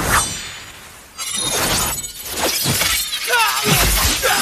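Animated-battle sound effects for flying energy attacks. A sudden whoosh and hit comes at the start, then a dense stretch of crackling, shattering impacts and rushing noise from about a second in, with sliding pitched sounds joining near the end.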